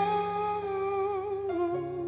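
A singer's voice holding one long sustained note with a slight waver, stepping down in pitch about 1.5 seconds in, over sustained piano chords that change at the same moment.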